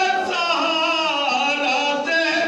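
Men's voices chanting soz, the unaccompanied Shia mourning elegy, with long held, ornamented notes sung together by several reciters.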